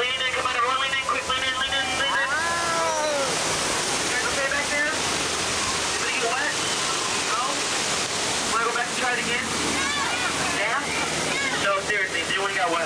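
Artificial waterfall on the Jungle Cruise pouring and splashing right beside the boat, a steady rushing hiss. People's voices sound over it in the first few seconds and again from about nine seconds in.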